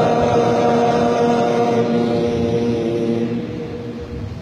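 A boy's voice holding one long melodic note while chanting Quran recitation as imam of a prayer, fading near the end.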